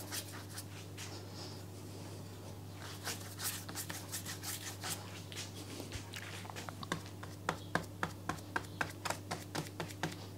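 Paintbrush stroked across wet watercolour paper: scattered brushing from about three seconds in, then quick, regular short strokes at about four a second over the last few seconds, over a steady low hum.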